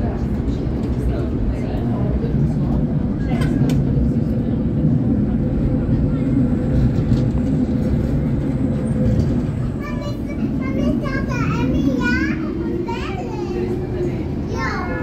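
Tram running along its rails, a steady low rumble with a faint steady whine. From about ten seconds in, high children's voices talk and call out over it.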